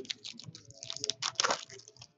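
Foil trading-card pack wrapper crinkling and crackling in the hands as the pack is opened, loudest about a second and a half in.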